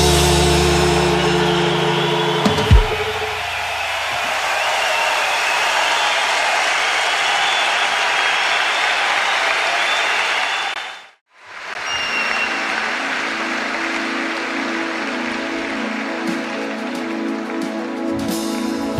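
A live rock band holds its last chord and ends the song with a final hit about three seconds in, followed by audience applause. The applause cuts out for a moment near the middle and comes back with faint sustained keyboard notes underneath.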